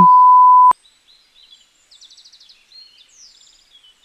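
A steady, high single-tone censor bleep that cuts off abruptly with a click under a second in. It is followed by faint, rapid chirping trills in quiet background ambience.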